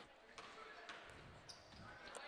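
Faint basketball dribbling on a hardwood gym floor, a bounce roughly every half second, with the hall otherwise near silent.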